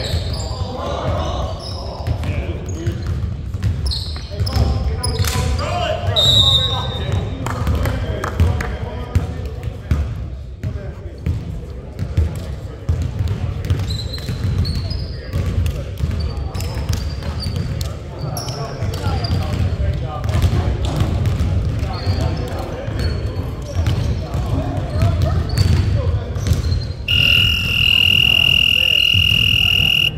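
Reverberant gym with players' indistinct voices, a basketball bouncing and brief sneaker squeaks on the hardwood court over a steady low hum. About 27 seconds in, a loud, steady, high electronic tone starts and holds to the end.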